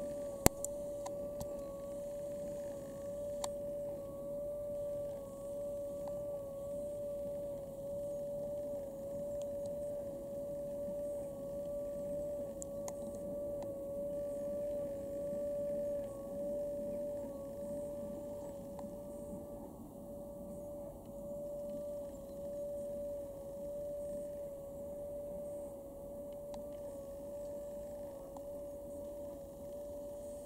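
A steady whine, wavering slightly in pitch, with a fainter tone an octave above, over a low, even rumble. A single sharp click about half a second in.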